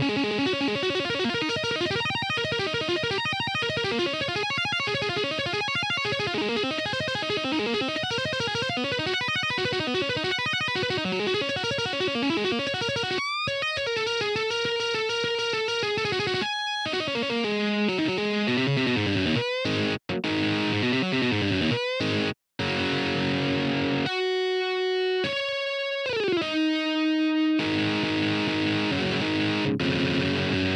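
Electric guitar solo: rapid runs of fast single notes for roughly the first half, then sparser held notes with short breaks between them, a note sliding down in pitch about 26 s in, and steadier notes to the end.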